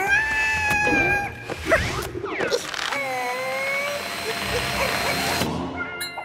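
Cartoon characters making wordless squealing cries, with background music. One long cry rises and then holds over the first second and a half, and a second cry comes about three seconds in.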